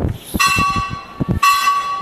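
A bell rings twice with a clear metallic tone, struck about half a second in and again about a second later, the second strike louder. Under it are faint knocks of chalk on a blackboard.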